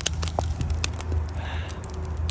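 Wood and cardboard fire crackling in an outdoor fire pit, with many sharp pops over a steady low rumble.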